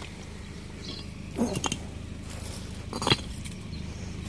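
Broken concrete slabs and rubble knocking and scraping as they are shifted by hand, twice, the second louder, about a second and a half in and about three seconds in, over a steady low hum.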